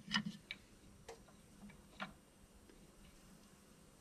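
A few faint, short clicks in the first two seconds, then quiet: small handling sounds of balance-lead wires, a plastic connector and a small screwdriver being worked at a push-in terminal block.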